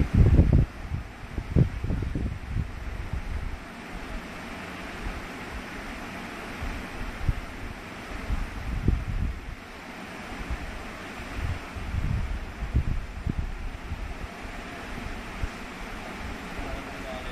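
Steady airy background hiss like a room fan, with irregular low rumbles of air buffeting the microphone, strongest at the start and flaring up again several times.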